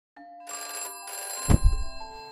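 A telephone bell rings in two quick bursts, then about a second and a half in a loud, low thump cuts across it.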